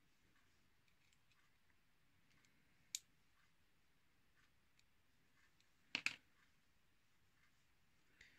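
Small metallic clicks from hair shears being taken apart by hand as the pivot screw is undone: faint scattered ticks, one sharp click about three seconds in and a quick double click about six seconds in.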